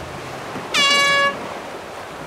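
A single short air horn blast, a bit over half a second long, sounding as a racing sailboat crosses the finish line: the race committee's finish signal. Wind and water hiss go on underneath.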